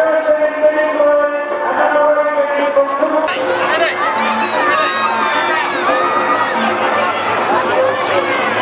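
Music with long held notes, cut off about three seconds in by a crowd of many voices talking and calling out at once.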